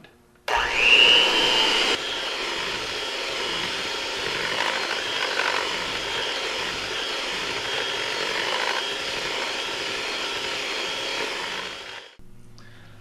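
Electric hand mixer starting up with a rising whine about half a second in, then running steadily with its beaters churning through gingerbread batter, louder for the first second or so. It cuts off just before the end.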